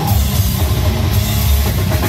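Slam death metal band playing live: heavily distorted guitars and bass over pounding drums and cymbals, loud and dense with a heavy low end, heard from within the crowd.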